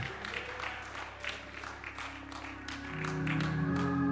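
Scattered applause from a church congregation: irregular handclaps. About three seconds in, a sustained keyboard chord comes in and holds.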